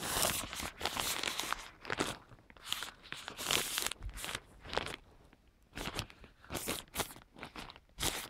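Attic insulation being disturbed, crunching and rustling in irregular bursts, with a short lull about five seconds in.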